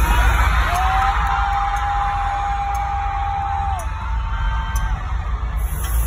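Loud concert music with a heavy bass over the venue's sound system, with fans in the crowd screaming and whooping; one high scream is held for about three seconds before dropping away, and shorter shouts follow.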